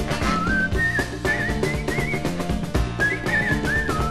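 A whistled melody over a New Orleans rhythm-and-blues band with piano and drums: two short whistled phrases, the second starting about three seconds in after a brief break.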